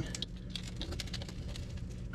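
Pizza cutter wheel rolling through a baked pizza crust and scraping on the metal pizza pan, making a string of small irregular clicks and scratches.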